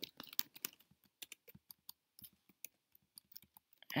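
Typing on a computer keyboard: faint, irregular keystrokes, closely spaced in the first second and sparser after.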